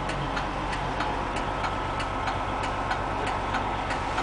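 Steady mechanical hum inside the cabin of a parked MCI 102-DL3 coach, with a light, regular ticking about three to four times a second.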